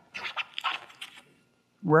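A man's breathy puffs into a microphone, several short ones in the first second, before he starts speaking again at the very end.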